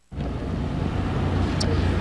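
Steady outdoor background noise, a low rumble under a hiss, with a faint click about one and a half seconds in.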